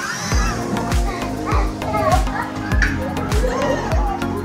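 Children's voices and play chatter over background music with a steady drum beat of a little under two beats a second.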